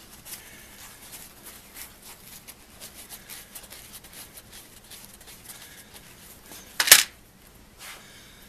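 Paper towel rustling and crinkling in the hands as small nickel-plated screws are rubbed dry in it, with one short, much louder sharp noise about seven seconds in.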